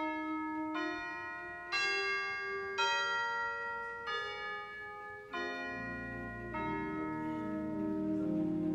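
Organ offertory: a slow melody of bell-like notes, a new one about every second, each sounding sharply and then fading, over softer held chords. Low bass notes join about six seconds in.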